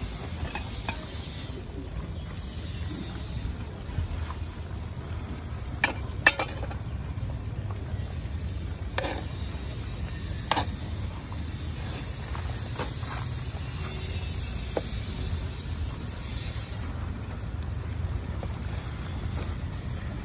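Steady low rumble of wind on the microphone, with a few sharp clicks scattered through it, the loudest about six seconds in.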